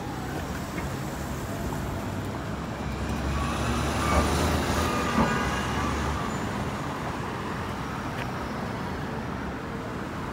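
City street traffic at a busy intersection: a steady wash of engine and tyre noise that swells louder for a few seconds in the middle, with a deep rumble, as vehicles pass close by, then settles back.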